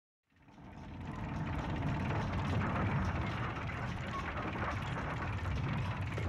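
Large clockwork gears turning: a dense run of clicks over a low rumble. It fades in from silence over about the first second, then runs steadily.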